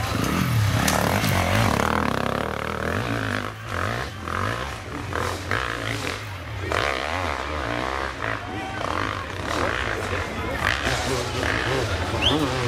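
Enduro motorcycle engine revving hard as the bike climbs a steep, rutted dirt slope, its note rising and falling with the throttle. Spectators can be heard talking.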